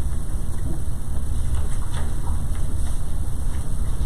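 Steady low rumble of room noise, with a few faint light rustles above it.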